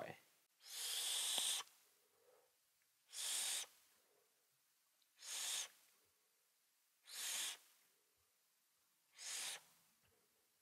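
Five breathy whooshes about two seconds apart, the first the longest: a person drawing on an e-cigarette (a Noisy Cricket mod with a Wotofo Troll dripping atomizer) and blowing out the vapour in puffs.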